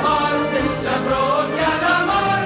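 Choral music: a choir singing held notes, with orchestral backing.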